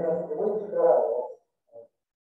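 A man's voice, muffled by a face mask and not clear enough to make out words, for about a second and a half, with a brief sound near the end.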